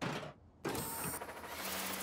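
Cartoon sound effect of a small mechanical whir, like a propeller spinning, starting about half a second in and running steadily after a short sound at the very start.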